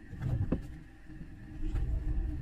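Low rumble of a small car heard from inside the cabin as it gets under way, growing stronger near the end, with a short click about half a second in.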